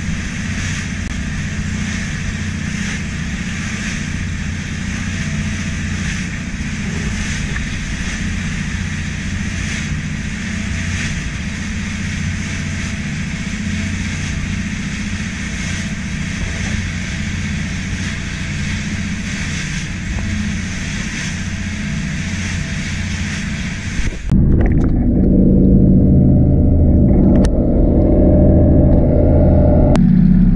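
A small fishing boat's engine running steadily while the boat is under way. About 24 seconds in, the sound cuts abruptly to a louder, muffled low rumble with the high end gone.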